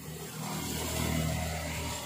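Sanyo 21-inch CRT television giving a steady low hum with a hiss that swells in about half a second in: static from the set as its picture changes from blue screen to snow while it searches channels.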